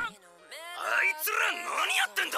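An anime character's voice delivering a dialogue line over soft music, with one word drawn out and the pitch sliding up and down.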